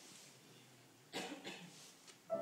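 A person coughs twice in quick succession, about a second in, over faint room tone.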